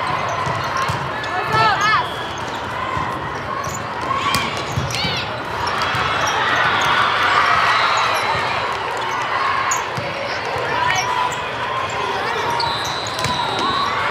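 Volleyball game sounds in a big reverberant hall: volleyballs being struck and bouncing, sneakers squeaking on the sport court in short rising chirps, and steady crowd chatter. A steady high whistle sounds near the end.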